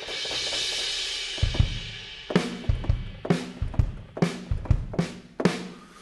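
Toontrack EZdrummer virtual drum kit playing back: a crash cymbal opens and rings away over about two seconds, then kick drum and snare drum settle into a steady beat, the snare landing about once a second.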